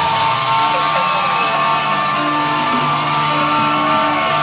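Rock band music: a song with guitar over held, sustained chords, with no singing in this stretch.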